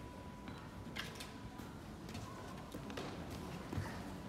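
Quiet room tone in a large hall, with scattered light taps of footsteps on a wooden floor, the sharpest about a second in. A faint steady high tone fades out about a second and a half in.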